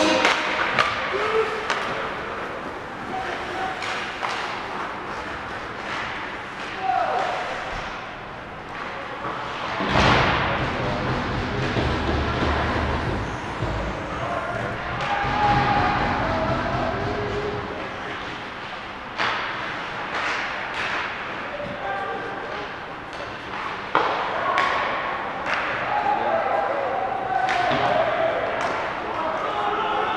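Ice hockey game sounds in an indoor rink: sticks and puck clacking and knocking, thuds against the boards, and shouts from players and spectators echoing in the hall. A louder low rumble runs from about ten to fifteen seconds in.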